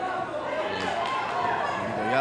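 Shouting voices in a large hall, cornermen and crowd calling out during the fight, with two sharp knocks about a second in.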